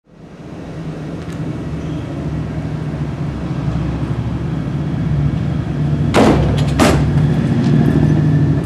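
Steady low mechanical hum, like an idling engine or machinery, fading in from silence at the start and slowly growing louder. Two short scuffing noises come about six and seven seconds in.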